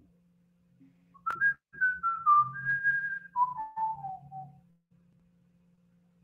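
A person whistling a short tune: a string of held notes that steps downward in pitch for a few seconds, over a faint steady low hum.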